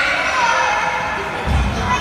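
Voices and music echoing in an indoor swimming pool hall, with a dull low thump about one and a half seconds in.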